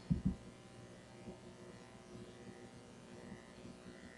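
Quiet room tone with a faint steady electrical hum, and two soft low thumps in the first half-second.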